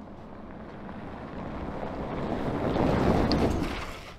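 Tyre and wind rush of the hydrogen fuel cell Toyota Hilux pickup driving by on loose gravel, swelling to a peak about three seconds in and fading near the end. There is no engine note, as fits its electric fuel cell drive.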